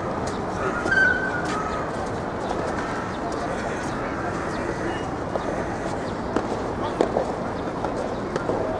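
Soft tennis play: a few sharp pops of rackets striking the soft rubber ball in the last couple of seconds, over steady background noise and distant shouting voices.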